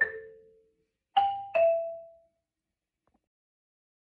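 Concert marimba struck with mallets: one note rings out, then a falling pair of higher notes comes about a second in, each fading away. These are the closing notes of the piece, followed by silence.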